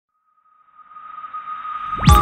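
Intro sound effect: a single steady high tone with a rush of noise that swells up from silence, growing louder as it builds toward the intro music.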